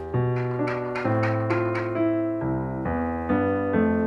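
Background piano music: held chords that change about once a second.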